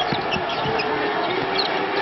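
Arena crowd noise from a basketball game, with a ball dribbled a few times in the first second and short sneaker squeaks on the hardwood court.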